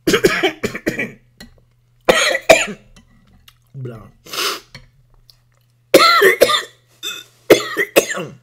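A person coughing hard in about five separate bouts, with throat clearing between them.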